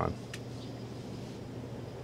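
A sharp click as a space heater is switched to its fan setting, then the heater's fan running on the inverter's output with a steady low hum and light hiss.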